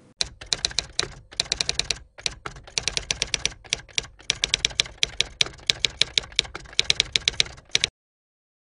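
A rapid run of sharp clicks in bursts with brief pauses, like fast typing, cutting off suddenly near the end.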